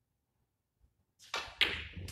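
A snooker shot on a full-size table: after a silent pause, a short rushing noise begins over a second in, followed by quick sharp knocks of the balls.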